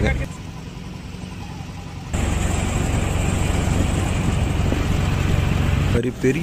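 A boat's motor running steadily, its low hum coming in suddenly about two seconds in after a quieter stretch.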